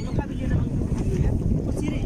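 Wind buffeting the microphone, a steady low rumble, with brief snatches of voices over it.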